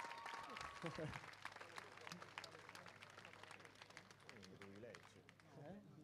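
Faint, scattered applause from an audience, thinning out over the first few seconds, with faint voices near the end.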